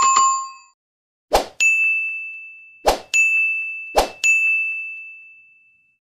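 Animated subscribe-screen sound effects: a bell-like notification ding at the start, then three times a short sharp hit followed a moment later by a ringing ding, about a second and a half apart. The last ding fades out over about a second and a half.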